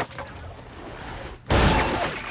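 A makeshift wooden trebuchet's arm swings down and strikes the hatch's glass window, a sudden heavy impact about a second and a half in.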